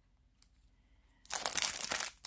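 A clear plastic bag crinkling loudly as it is handled, starting a little over a second in after a short quiet stretch.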